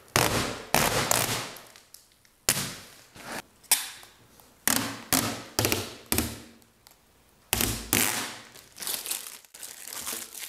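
Clear protective plastic film being peeled off a laser cutter's glossy lid. It comes away in a series of sharp crackling tears, each starting suddenly and fading over a fraction of a second, about a dozen in all.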